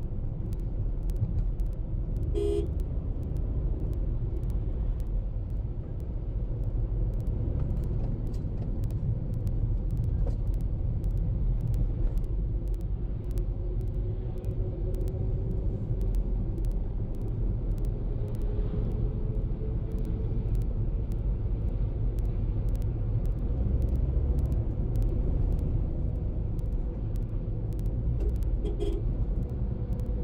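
Car travelling on the road, heard from inside the cabin: a steady low rumble of engine and tyres, with an engine note slowly rising in pitch through the second half. Two brief horn toots, one about two and a half seconds in and one near the end.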